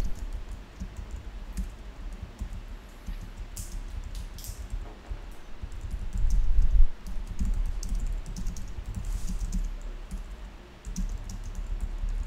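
Typing on a computer keyboard: irregular runs of quick keystrokes with short pauses, over a low rumble that is loudest a little past the middle.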